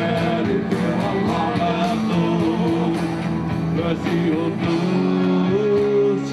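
A live rock band playing at a steady beat, with drums, electric guitars and keyboards.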